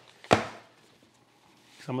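A single thump of a book being handled against a wooden workbench: one sharp knock about a third of a second in, fading quickly.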